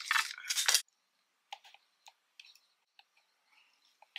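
Wooden craft sticks rattling and scraping against their cardboard box as one is pulled out, for under a second, then a few faint light clicks.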